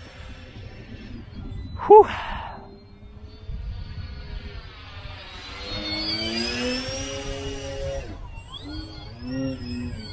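Twin electric motors and propellers of a foam-board RC plane whining as it makes a low pass. The pitch climbs as it comes in, then drops as it goes by about six to seven seconds in. Wind rumbles on the microphone throughout.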